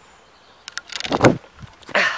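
A few light clicks, then a dull thud about a second in and a sharp knock near the end: a person stepping down from a bench onto grass, with handling noise from the hand-held camera.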